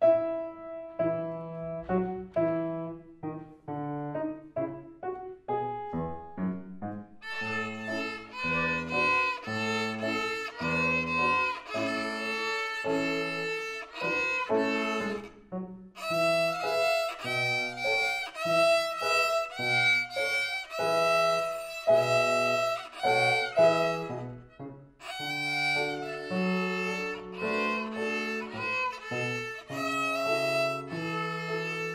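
A violin duet played by two children with grand piano accompaniment, the piano carrying the low notes beneath the violins. The music grows fuller about seven seconds in.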